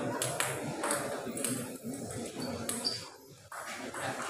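A table tennis ball clicking a few times at irregular moments between points, with a short voiced call in the hall about halfway through.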